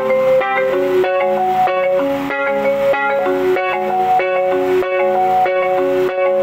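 Yamaha PSR-S arranger keyboard playing an instrumental interlude: a melody of short, evenly stepped notes over a steady, repeating accompaniment, with no singing.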